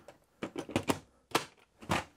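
Hard plastic blaster parts knocking and clicking as they are handled and set down: about half a dozen irregular sharp clacks, the loudest near the middle and just before the end.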